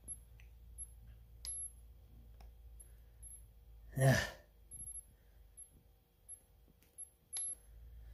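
A man's breathy, sighed "yeah" about four seconds in, amid near-quiet, with a few faint clicks from the handheld infrared thermometer being worked, its button pressed again and again.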